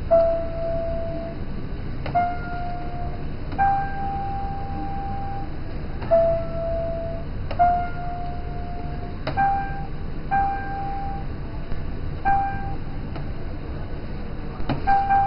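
Giant floor piano's electronic notes triggered by stepping on its keys: about eight single held tones, one at a time, a rising run of three notes played twice and then the top note repeated. A steady low hum runs beneath.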